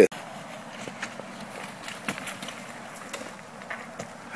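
Dirt bike rolling down a rocky trail with its engine off: tyres crunching over loose rock, with scattered small clicks and knocks.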